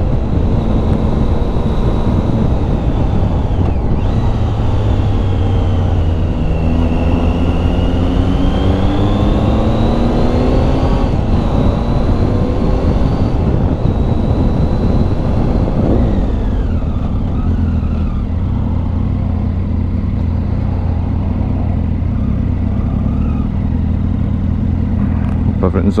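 Triumph Tiger 800's three-cylinder engine under way, heard from the bike with wind noise. The pitch climbs for several seconds as the bike accelerates, drops about sixteen seconds in as it slows, then runs lower and steadier.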